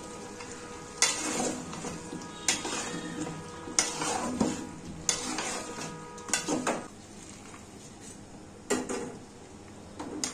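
A curry being stirred in an aluminium pot, the utensil scraping and knocking against the pot in about seven irregular strokes over a low sizzle of the cooking food.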